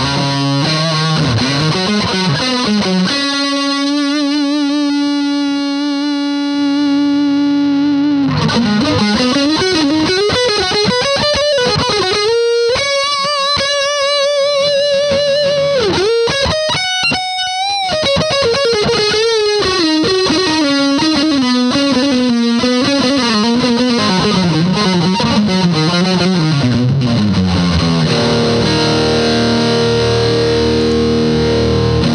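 Electric guitar played through a Boss Metal Zone MT-2 distortion pedal, patched into the effects loop of a Roland JC-120 amplifier so the pedal works as the preamp. It plays a distorted single-note lead line: a held note, then bends and long sustained notes with wide vibrato, ending on a sustained note.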